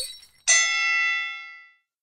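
A single bell strike about half a second in, ringing and fading out over about a second: a wrestling ring bell marking the end of the match.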